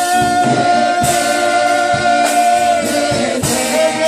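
Gospel singing amplified through a microphone: a man's voice holds one long note for nearly three seconds, then moves on, with other voices singing along and drum strokes keeping the beat.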